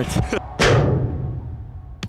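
One heavy thud about half a second in, with a falling whoosh and a long, drawn-out low decay, slowed down as in a slow-motion replay: a hard-kicked football striking a double-glazed window pane that holds and does not break.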